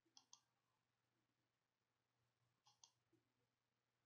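Faint computer mouse button clicks: two quick clicks at the start, then two more about two and a half seconds later.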